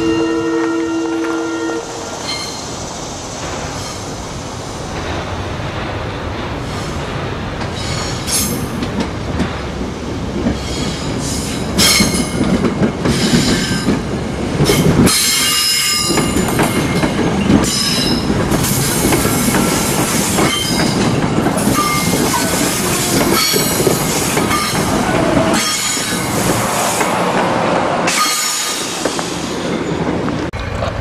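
A SEPTA Silverliner electric commuter train sounds a short two-note horn blast, then passes close by. Its wheels clatter over rail joints, with scattered high wheel squeal, growing louder and staying loud for most of the pass before easing off near the end.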